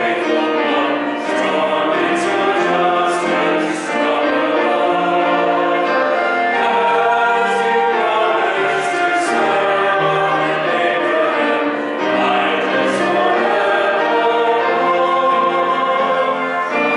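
A hymn sung by several voices together, with piano accompaniment, at a steady pace, the notes held for about a second each.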